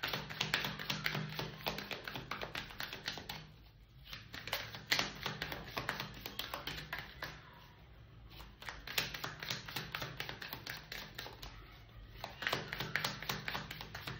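A tarot deck being shuffled by hand: rapid runs of light card clicks and flicks in several spells with short pauses between them. Soft background music plays underneath.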